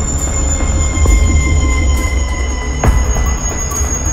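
Dramatic background score: several sustained high tones held steady over a deep rumbling bass, with a single sharp tick near the three-second mark.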